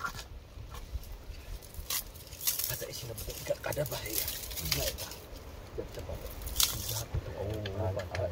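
Quiet voices talking in the background, with a handful of sharp snaps and crackles from the smoking campfire and the sticks being worked in it.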